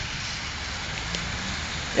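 Steady outdoor hiss of wet wintry ambience, with a faint low hum in the second half and a faint click about a second in.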